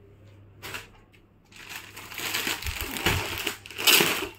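Clear plastic garment packet crinkling as a packed suit is handled, starting with a short rustle about half a second in, then a loud, continuous crackle from about a second and a half in that is loudest near the end.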